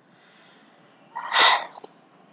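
A person's single short, noisy breath sound about a second in, sneeze-like and without voice, over faint steady hiss.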